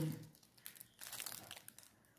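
Faint crinkling of a clear plastic wrapper around a honey cake as a hand handles it: a scattering of soft crackles.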